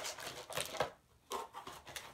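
Cardboard box and plastic lure packaging being handled: a few irregular rustles and light clicks as items are rummaged through and lifted out.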